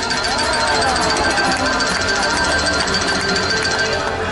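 Show music with a steady, fast ticking beat, played during a pause in the commentary.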